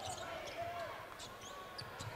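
Faint in-arena sound of a basketball game: low crowd noise with a few short squeaks and knocks from play on the court.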